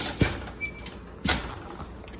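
Glass pot lid being set down over aluminium foil on a metal pot: a few light knocks and a brief faint clink, with some foil rustle.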